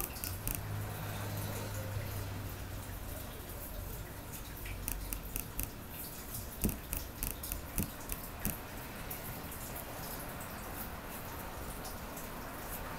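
Paintbrush dabbing wet decoupage glue onto paper scraps on a wooden board: soft, irregular taps and wet clicks, busiest in the middle, over a faint low hum in the first few seconds.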